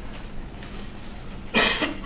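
A single short cough about one and a half seconds in, over quiet room tone.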